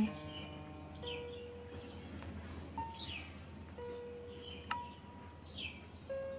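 Soft background music of sustained, chime-like notes, with short falling chirps like birdsong about once a second. Two faint clicks come about two and five seconds in.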